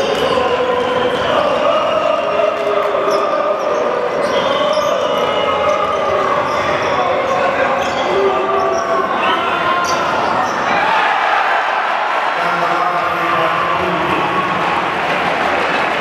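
Large group of basketball ultras chanting in unison in a reverberant indoor arena, with the chant changing about two-thirds of the way through. Short sharp knocks of a basketball bouncing on the court come through the singing.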